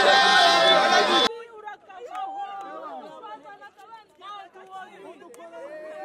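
Loud crowd of football fans, many voices at once, cut off abruptly about a second in; then several people talking at once close by.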